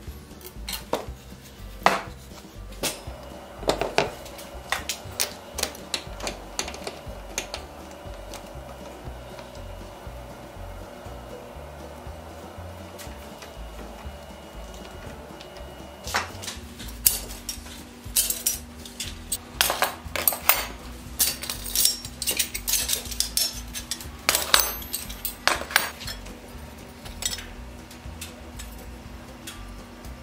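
Steel wagon hub bands clinking and clattering against each other as they are handled: a run of sharp metallic clinks, busiest in the second half. In the first half, scattered knocks and clicks come as a wooden hub block is fitted to a metal lathe's chuck.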